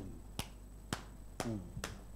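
Four sharp finger snaps, about half a second apart, with a brief hummed "mm" from a man between the last two.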